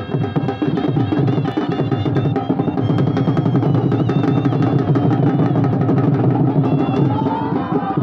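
Loud, fast drumming that runs on steadily, with pitched music over it.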